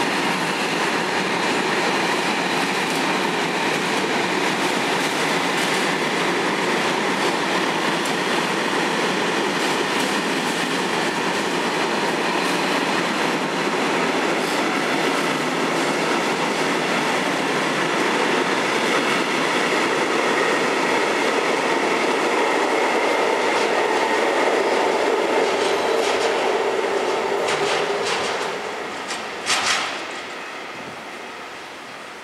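A long rake of loaded timber freight wagons rolling past close by: a steady rumble and clatter of wheels on the rails, with a faint high whine running under it. The noise falls away about two seconds before the end, followed by a couple of sharp clicks.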